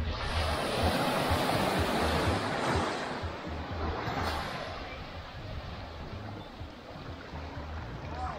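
Small waves washing up onto a sand beach: a swell of surf noise over the first few seconds that slowly dies away.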